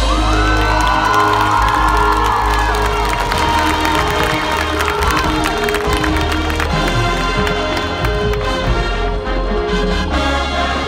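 Marching band playing sustained brass notes over a low bass, with the stadium crowd cheering and whooping during roughly the first half.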